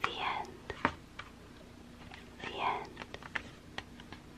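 Close-mic whispering: two soft breathy whispered phrases about two and a half seconds apart, with small sharp mouth clicks scattered between and after them.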